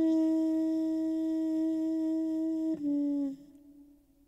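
Background music: a saxophone holds one long note, steps down to a lower note just under three seconds in, and fades out.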